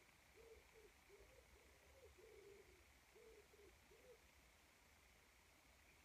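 Faint cooing of a pigeon: a run of soft, low, rounded coos, about two or three a second, that stops about four seconds in.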